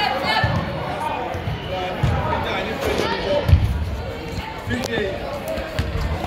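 A soccer ball thumping several times as it is kicked and knocked about on indoor turf, the loudest thump about three and a half seconds in, over players' and spectators' voices echoing in a large hall.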